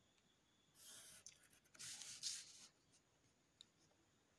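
Faint scratching of a graphite pencil and plastic ruler on graph paper: two scratchy strokes a second apart, as lines are drawn and the ruler is shifted, then a small click near the end.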